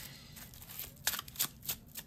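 Tarot cards being handled and shuffled, with a quick run of crisp card flicks and rustles in the second half.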